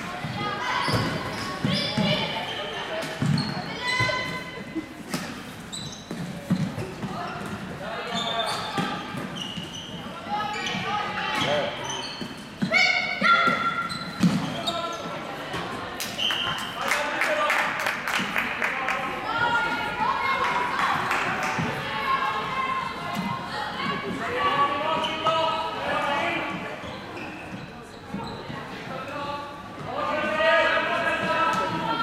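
Floorball game in an echoing sports hall: players' voices calling out over many scattered clicks and knocks from sticks, ball and feet on the court.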